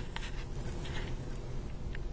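Faint handling noise: light scratches and a few soft clicks spread over a steady low hum.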